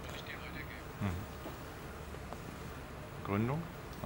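Steady low electrical hum from the catheterisation lab's equipment, with two short voice sounds from the staff, one about a second in and one rising in pitch near the end.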